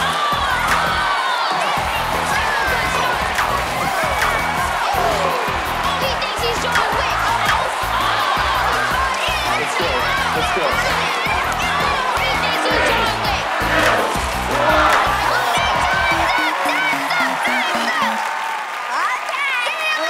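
Upbeat game-show music with a steady driving beat under excited shouting from kids. The beat stops about sixteen seconds in and a stepped, falling electronic jingle plays as the timer runs out.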